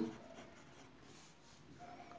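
Faint scratching of a pen writing by hand on a paper workbook page.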